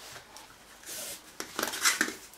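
Camping gear being handled: a soft fabric rustle, then several light clicks and clinks of a metal cooking pot, loudest near the end.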